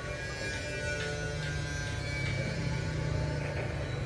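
Background music with long held tones, over a steady low rumble.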